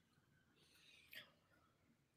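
Near silence: faint room tone, with one brief, faint sound about a second in.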